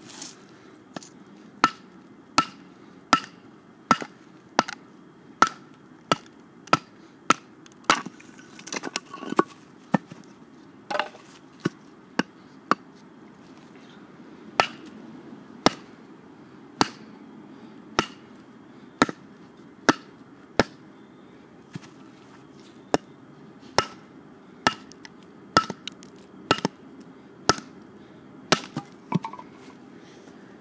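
A Schrade SCHF1 fixed-blade knife being batoned through a piece of firewood: about forty sharp knocks of the baton on the blade's spine, roughly one every second or less, with a quick flurry of blows about eight seconds in and a short pause near the middle, as the wood splits.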